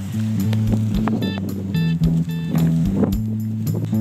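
Background music: a stepping bass line under a regular beat, with bright high keyboard notes.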